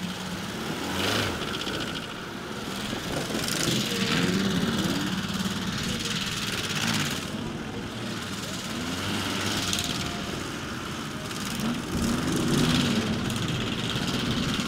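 Air-cooled Volkswagen flat-four engines of a dune buggy and an off-road Beetle revving on a dirt course, their pitch rising and falling repeatedly as the drivers work the throttle.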